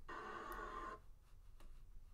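Faint audio from a fight video playing on a computer, which cuts off about a second in, followed by a few soft clicks as the video is scrubbed.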